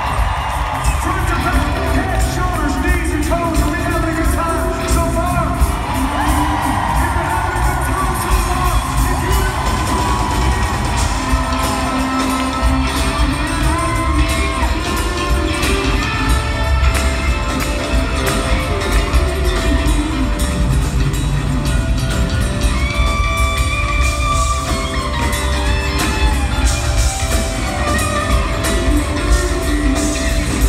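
Live pop-rock band playing at full volume, with electric guitars, bass and drums under a sung lead vocal, heard from among the audience.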